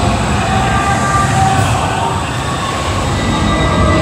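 Loud, steady rumble of a robotic-arm dark ride vehicle in motion, mixed with the ride's sound effects, with a few faint held tones from the soundtrack above it.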